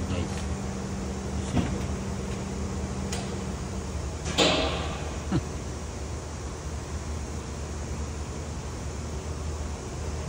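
Steady low mechanical hum, with a higher tone that drops out about three and a half seconds in. A few short knocks and clicks sound over it, the loudest a brief rush of noise about four and a half seconds in.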